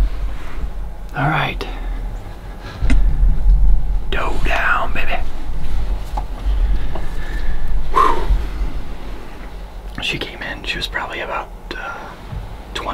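A man whispering in short, hushed phrases, over a low rumble.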